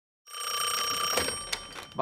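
Telephone bell ringing with a fast, rattling trill; the ring breaks off about a second in and dies away.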